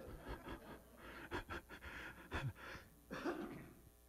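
Faint, irregular breathing close to a handheld microphone.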